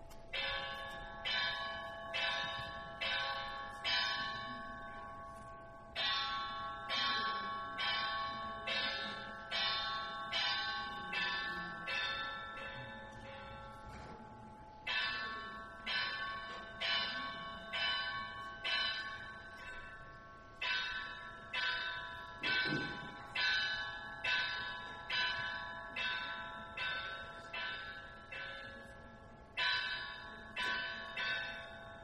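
A set of bells ringing in an even sequence of about two strokes a second, each stroke ringing on into the next, in four runs separated by brief pauses.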